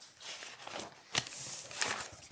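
Paper and notebook handling: a spiral-bound notebook's page rustling as it is bent and the notebook lifted off the table, with two sharp clicks, one about a second in and one near the end.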